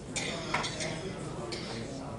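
A few short clinks and clatters, with faint voices underneath.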